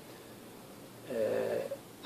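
A man's drawn-out hesitation filler "ehh", held on one steady pitch for under a second about halfway through, after a quiet pause.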